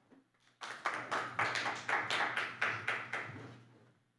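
Audience clapping after a public speaker finishes, a quick irregular patter of many hand claps that starts about half a second in and dies away just before the end.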